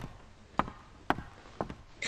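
Footsteps across a stage: four evenly paced steps, about half a second apart.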